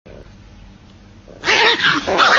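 A dog, woken from sleep, lets out a sudden loud vocal outburst about one and a half seconds in, after a quiet start.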